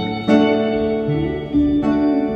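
Live band music led by acoustic guitar chords, with no singing. A new chord is struck about a third of a second in and another about a second and a half in.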